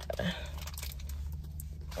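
Low steady hum inside a car cabin, quiet and unchanging, with one faint short sound a fraction of a second in.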